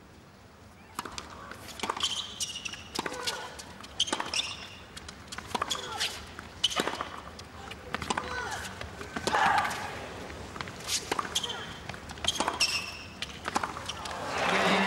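Tennis rally on a hard court: a racquet strikes the ball about once a second, with short high squeaks from shoes and brief grunts from the players on their shots.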